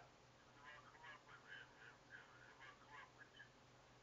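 Faint, tinny voice of the other party in a phone call, coming through a mobile phone's earpiece held to the face, with a low steady hum underneath.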